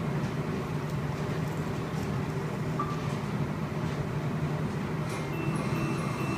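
A steady low hum with faint background noise, even in level throughout, with no distinct gulps or slurps standing out; a few faint high thin tones come in near the end.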